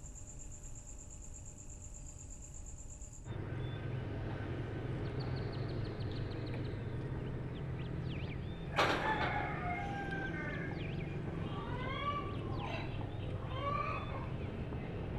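A cricket's steady high trill for the first three seconds, then an outdoor daytime ambience with a low hum and birds chirping and calling. About nine seconds in there is a single sharp clack, the loudest sound here.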